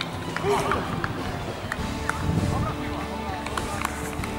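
Footballers shouting and calling to each other on the pitch during play, with a few sharp knocks like the ball being kicked.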